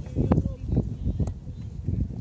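Distant calls and shouts of football players and spectators across an open pitch, over a heavy low rumble of wind on the phone's microphone.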